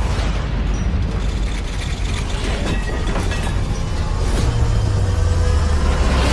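Loud cinematic sound design: a heavy low rumble under a dense noisy wash, swelling into a rising whoosh near the end.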